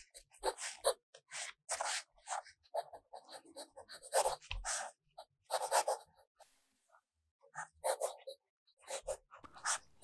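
Fountain pen nib scratching faintly on steno-pad paper while cursive is written: a string of short, irregular pen strokes, with a pause of about a second just past the middle as the pen lifts.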